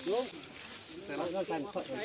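Several people talking in Thai over a steady high hiss.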